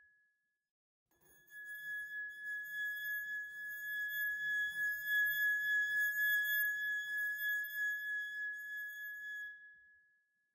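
A single steady high-pitched tone with overtones comes in about a second in. It swells slightly in the middle and fades out near the end.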